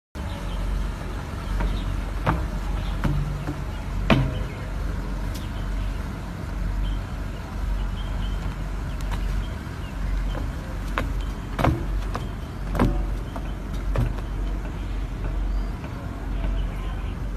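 Lion dancers' feet landing on the tops of tall stilt poles: a handful of sharp knocks, the loudest about four seconds in. A steady low rumble lies under them.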